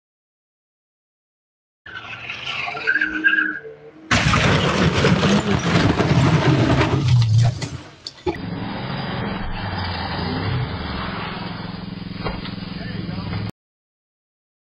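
Audio from crash-camera clips cut one after another: after a short stretch that may hold voices, about four seconds of loud car noise with tyres skidding and knocks, then, after a cut, a steadier duller rushing noise that stops suddenly near the end.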